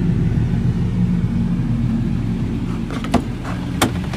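Ford 6.7L Power Stroke V8 turbo diesel idling steadily, heard from inside the cab. A couple of sharp clicks come near the end.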